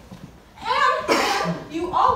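A girl speaking, with a short cough about a second in.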